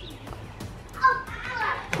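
A short, high-pitched, wavering vocal sound about a second in, after a quieter first second.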